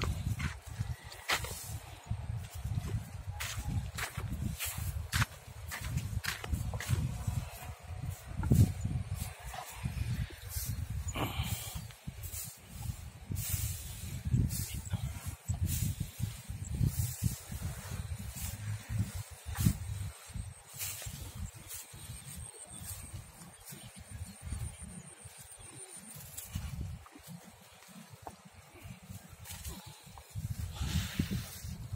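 Footsteps rustling and crunching through cut, flattened rice straw on wet ground, irregular throughout, with wind buffeting the microphone as a low rumble.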